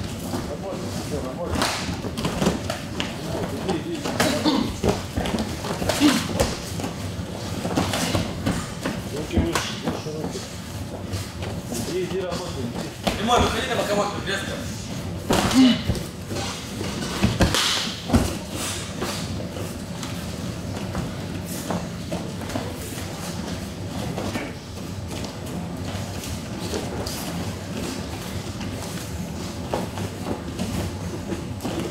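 Scattered thuds of an MMA exchange in a cage, gloved punches and kicks landing, with voices calling in the background. The loudest impacts come about halfway through.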